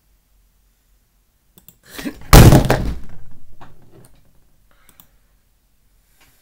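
A single loud thump with a rumbling decay of about a second and a half, followed by a few light clicks.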